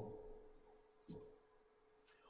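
Near silence: room tone with a faint steady hum. The end of a man's voice fades out at the start, and a brief faint sound comes about a second in.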